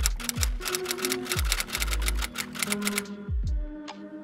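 Background music with a rapid run of typewriter-key clicks, about eight a second, that stops about three seconds in, as a sound effect for on-screen text being written out.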